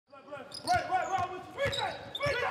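Basketball being dribbled on a hardwood court, a couple of sharp bounces, with voices calling out in the hall.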